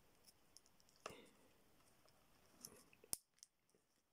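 Faint handling of a clip-on ferrite core on a mains cable, ending in one sharp click about three seconds in as its plastic case snaps shut.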